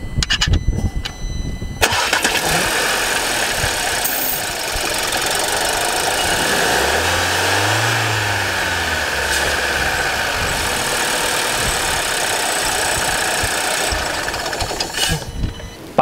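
VW 1.5 TSI turbocharged direct-injection four-cylinder petrol engine, heard with the bonnet open, being cranked and catching about two seconds in, then running at a steady idle. Its engine speed rises and falls once about eight seconds in.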